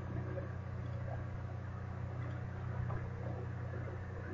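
Quiet, steady low hum of room tone, with no distinct clicks or other events.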